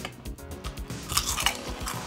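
Crunching and chewing of 3D Doritos, the puffed corn chips, as they are bitten and chewed: a quick irregular run of small crunches that grows busier about halfway through.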